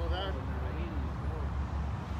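Indistinct voices of people talking in the background, over a steady low rumble.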